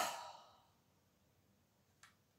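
A woman's breathy sigh right at the start, fading within about half a second, then near silence.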